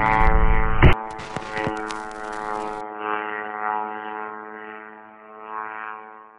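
A song with a heavy beat cuts off about a second in, leaving the steady buzz of a small propeller-driven military drone in flight, which fades away toward the end.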